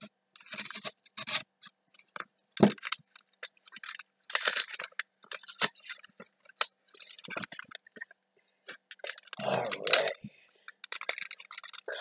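Yu-Gi-Oh booster pack wrapper crinkling as it is slit open with a knife, then cards being pulled out and shuffled through by hand, in irregular rustles with a sharp click about two and a half seconds in. A brief low hum comes near the end.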